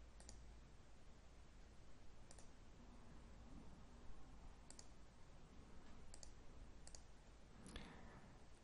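Several faint computer mouse clicks, some in quick pairs, spread over near-silent room tone.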